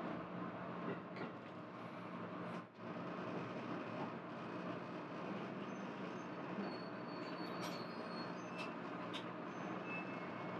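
HB-E300 hybrid railcar rolling slowly into a station platform, heard from inside the train: steady running noise over a low hum, with a few faint high squeals in the last few seconds as it slows.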